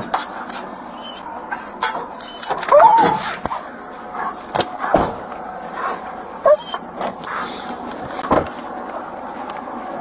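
Rustling and a scatter of sharp knocks and clicks from a body-worn camera and a deputy's gear as he climbs out of a patrol car, with a few brief wavering higher-pitched sounds, the loudest about three seconds in.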